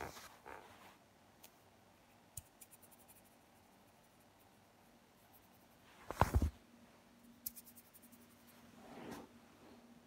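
A kitten playing with a sandal on a wooden floor: faint scratching and light clicks, with one loud knock-and-rustle about six seconds in as it comes up against the phone.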